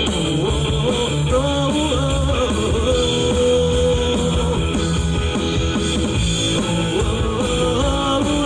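Live rock band playing loud through a PA: electric guitars, bass guitar and drum kit under a male lead vocal. About three seconds in, the melody holds one long steady note for a second and a half.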